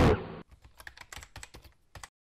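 Distorted guitar intro music cuts off right at the start. It is followed by about a second and a half of faint, quick computer-keyboard keystrokes, a typing sound effect.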